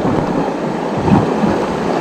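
Steady rushing noise of wind on the microphone and surf along a rocky shore.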